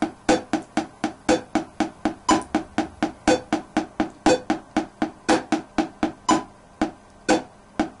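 A wooden drumstick tapping sixteenth notes on a hardback diary, about four even taps a second. A 60 BPM metronome clicks along once a second.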